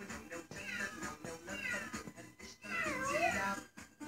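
Three meowing cries, each falling in pitch, about a second apart, over music playing in the background.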